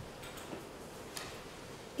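A pause in the speech: quiet room tone with a few faint, irregular ticks, the clearest just after a second in.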